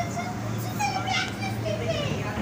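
Children's voices and other people chattering, with no clear words, over a steady low hum.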